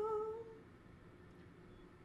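A woman cantor's solo singing voice holding the last note of a sung blessing with a wavering vibrato, fading out about half a second in; after that only low background noise.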